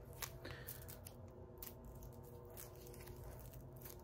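Faint handling noise: a few soft clicks and rustles as a black hook-and-loop cord-organizer strap is handled, over a low steady hum.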